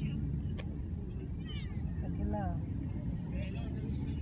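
People talking quietly over a steady low rumble, with a single sharp click about half a second in.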